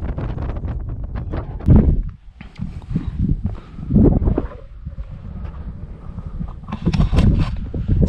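Wind buffeting a small camera microphone: rumbling noise with irregular gusts, the strongest about two and four seconds in.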